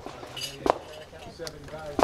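Pistol shot: one sharp report about two-thirds of a second in, followed by a few fainter clicks, with low voices in the background.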